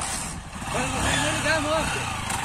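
Single-cylinder pushrod engine of a 2008 Honda CG 125 Fan motorcycle running at idle while the bike stands with its rider aboard. Voices are talking over it.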